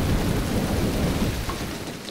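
A deep, steady rumble with a rain-like hiss, like thunder in a storm, slowly fading near the end.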